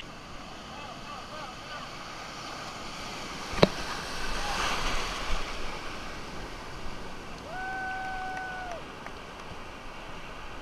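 Breaking surf and foamy wash in the shallows, swelling a little midway, with a single sharp knock about three and a half seconds in. Near the end a distant voice holds one long call over the surf.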